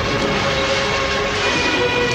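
Film soundtrack: a loud, steady rumbling noise with sustained tones over it, and a chord of higher held tones coming in about one and a half seconds in.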